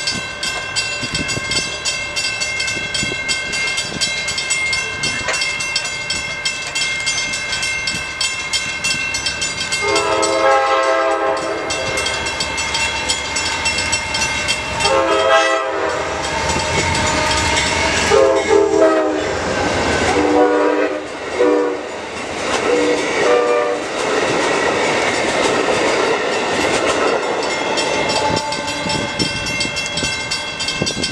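Amtrak GE P42DC Genesis locomotive blowing its horn as it approaches with a passenger train: a series of long and short blasts from about a third of the way in, followed by the steady rumble of the train going by. A steady high ringing tone is heard before the horn starts.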